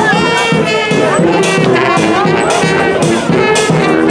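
Brass street band playing, with sousaphone and trumpets holding notes over a steady drum beat, and people's voices mixed in.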